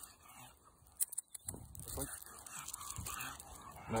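A leashed dog making short, low vocal sounds, not barks, as it strains and lunges toward cats, with a sharp click about a second in.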